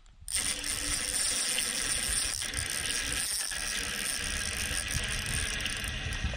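Spinning reel working against a hooked walleye on the line, a steady mechanical whirring and ratcheting of gears and drag that starts abruptly just after the beginning.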